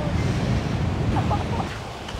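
Surf washing in and wind buffeting the microphone, a low rushing noise that fades toward the end.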